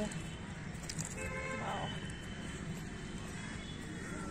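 Outdoor background sound: a steady low rumble, with faint distant voices around one to two seconds in.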